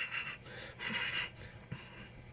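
Two faint breathy puffs, one at the start and one about a second in, like a child's panting or huffing. A light click comes near the end.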